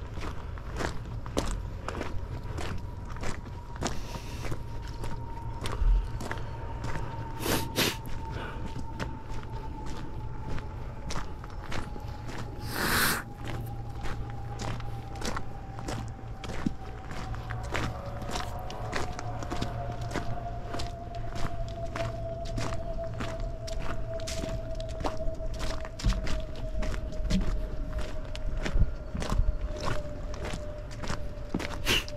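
Footsteps walking along a trail at a steady pace, about two steps a second. A faint thin tone slides slowly down in pitch underneath, and a short rushing noise comes about 13 seconds in.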